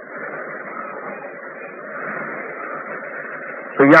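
Low, muffled murmur of voices from a gathered audience on a lo-fi recording, in a pause of the lecture. A man's voice starts speaking loudly at the very end.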